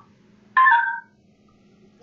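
Smartphone tone from the KakaoTalk voice-message recorder as recording is stopped: a short, falling two-note chime about half a second in.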